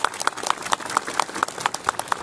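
A crowd applauding, the separate hand claps distinct and rapid.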